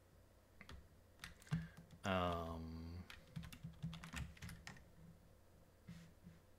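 Computer keyboard keys being pressed: a few scattered keystrokes, then a quicker run of them after about three seconds.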